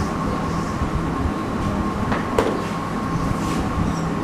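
Steady low background rumble with a faint electrical hum, and one short tap about two and a half seconds in.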